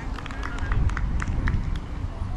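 Outdoor football-pitch ambience: a steady low rumble of wind on the microphone, with distant shouts and calls from players running on the field and short sharp chirps and clicks scattered through it.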